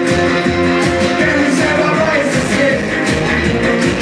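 Live rock music played loud through a club PA: electric guitar with a singer's voice, heard from the audience.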